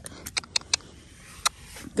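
Five sharp metallic clicks over the first second and a half: a lead rope's brass bolt snap being worked and clipped at a nylon halter's metal ring.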